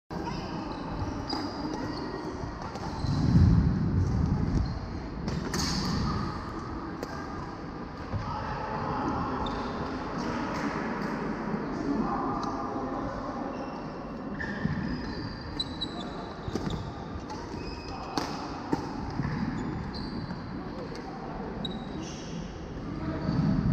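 Badminton play in a large, echoing sports hall: scattered sharp racket hits on the shuttlecock and many short, high squeaks of court shoes on the wooden floor, over a steady murmur of voices. A louder, low-pitched stretch comes about three seconds in.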